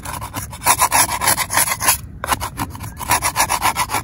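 Metal spatula scraping cooked-on burger residue off the anodized aluminum Banks Fry-Bake pan in quick, repeated strokes, with a short break about two seconds in. The residue scrapes away easily.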